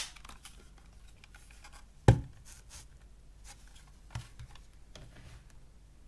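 Hands handling a small plastic hard-drive MP3 player: a sharp plastic click at the start, a louder knock about two seconds in, and a fainter tap about four seconds in, with light rustling between.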